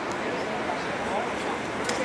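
Busy city square ambience: indistinct voices of passers-by over a steady hum of street noise.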